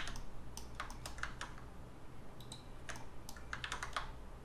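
Irregular clicking of a computer mouse and keyboard, with scroll-wheel ticks, in small clusters in the first second and again near the end, over a low steady hum.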